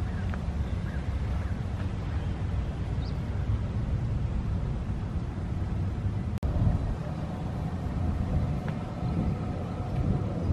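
Steady low rumble of outdoor background noise, with a brief dropout about six seconds in.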